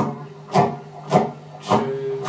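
Electric guitar strummed in a steady rhythm, about two sharp strokes a second, with a low note ringing between them.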